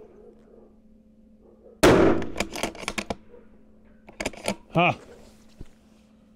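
A single shot from a muzzle-braked 6 BRA bolt-action precision rifle about two seconds in: one sharp, loud report that dies away over about a second. A few quick metallic clicks follow as the bolt is cycled.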